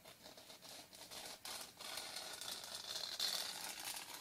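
Fingernails scratching and rubbing on the glittery rim of an egg-shaped Easter plaque: a dry, scratchy sound that becomes more continuous and louder in the second half.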